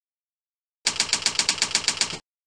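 Typing sound effect: a quick, even run of about a dozen keystroke clicks, roughly eight a second, starting about a second in and stopping abruptly.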